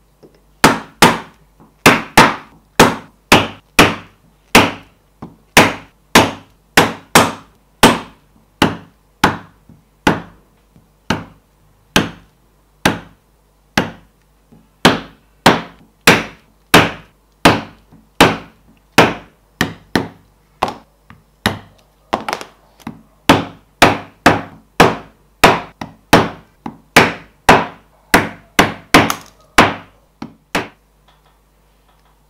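Mallet striking a Lekoza multi-prong stitching chisel through leather into a board, punching the hand-stitching holes: a steady run of sharp knocks, about one and a half a second, with brief short pauses as the chisel is moved along the line.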